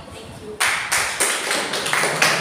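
A small audience breaks into applause about half a second in, many hands clapping in a dense, steady patter.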